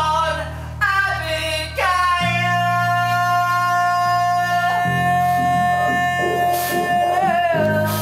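Live band music: a voice sings 'on', then a long high note is held over sustained synthesizer chords that change about every two and a half seconds.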